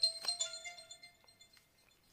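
A bright, bell-like chime: one struck note that rings out and fades over about a second and a half.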